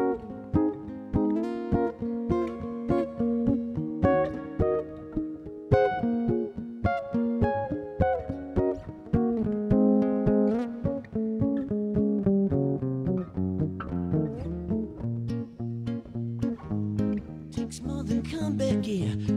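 Solo acoustic-electric guitar playing an instrumental break: a quick run of picked melody notes over chords. Lower bass-string notes come in during the last few seconds.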